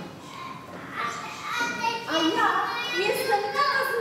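A high-pitched voice in a large hall, with drawn-out held and gliding notes in the second half.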